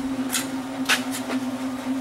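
Steady hum from the motor-driven test rig spinning the Mann Smart Drive generator, a trailer drum hub with a washing-machine-type stator, running under load while it feeds power into a grid-tie inverter. A few short clicks come about half a second and a second in.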